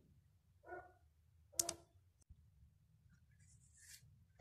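A soft, faint rasp near the end as a curl-defining brush is drawn through wet, cream-coated curly hair, after two brief faint mouth sounds in the first two seconds.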